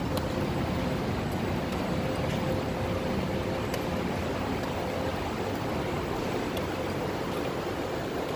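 Steady background noise of a large factory warehouse: an even machinery and air-handling hum with a faint constant tone.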